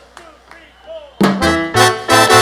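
A live salsa band comes in loudly about a second in: a brass section of trumpets plays over a strong, pulsing bass line. This is the opening of the song, and before it there is a quiet moment with faint voices.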